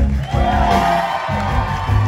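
Live blues-rock band playing: electric guitars, bass and drums with a long held note over them, and some cheering and whoops from the crowd.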